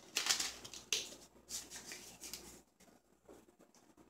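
Plastic food packaging rustling as it is handled and set down on a counter: a string of short rustles, busiest in the first couple of seconds, then fading out.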